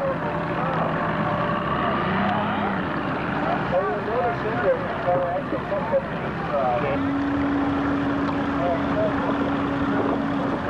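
A crowd of spectators on a boat chattering and calling out over a steady boat-engine drone. A steady higher engine tone joins about seven seconds in.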